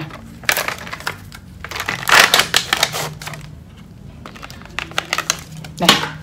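Sterile packaging of a dermal filler syringe being torn open and handled: irregular crinkling and tearing of paper-and-plastic wrap with scattered clicks, loudest about two seconds in.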